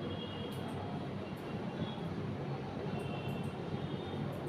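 Steady low background rumble, with a few faint short squeaks and ticks of a marker pen writing on a whiteboard.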